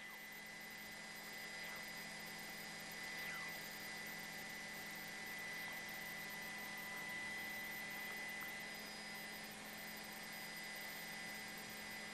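Faint steady hum and hiss from an open broadcast microphone line, with no distinct events.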